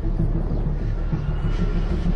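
A steady low rumble with no clear beginning or end, with a faint thin tone above it late on.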